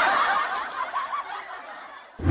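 A woman snickering, a soft laugh that fades away over the two seconds.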